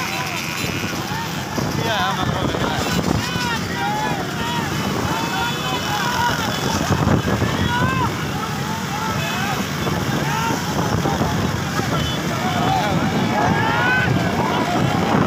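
Motorcycle engines running at speed with wind buffeting the microphone, and many short shouts and calls from people riding along throughout.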